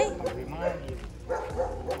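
A dog whining and yipping in short bursts, mixed with quiet voices.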